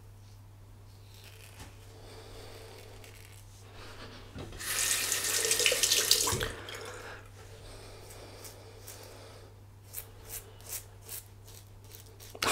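Bathroom tap running into a sink for about two seconds, starting about four and a half seconds in, as the double-edge safety razor is rinsed between passes. A few light taps follow near the end.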